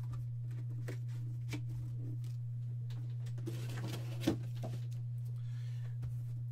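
Faint handling of sealed cardboard trading-card boxes, with one soft knock about four seconds in, over a steady low hum.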